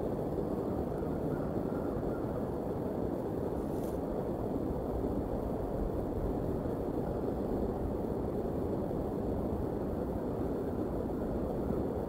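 Steady low outdoor rumble with no distinct events, picked up by an open-air nest-cam microphone.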